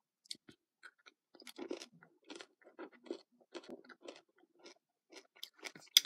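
Close-up chewing and crunching of a Cadbury Mini Egg, its crisp sugar shell cracking between the teeth in quiet, irregular crunches a few times a second, with one sharper click just before the end.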